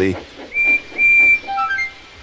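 Steam locomotive whistle: two short, high blasts at the same pitch, followed by a few brief tones stepping down in pitch.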